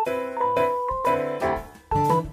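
Background instrumental music, a melody of held notes and chords that change in steps.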